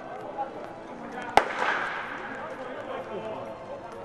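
A single sharp crack of a baseball bat striking a ball, about a second and a half in, over distant voices in the background.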